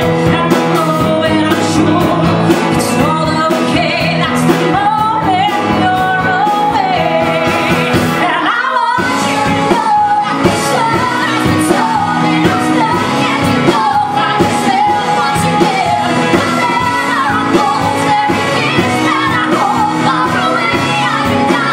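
Two female vocalists singing a pop-rock song with a live band of piano, electric guitar, bass and drums. The band briefly drops out about eight and a half seconds in, then comes back in.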